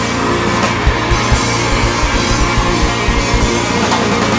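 Rock band playing an instrumental passage of the song, with no singing: drum kit beats driving under sustained chords, a run of low kick-drum hits from about half a second in to near the end.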